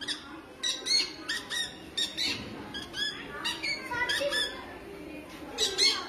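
Boys imitating parrots with their voices: a quick series of short, high-pitched squawks that rise and fall, broken by a pause about halfway through.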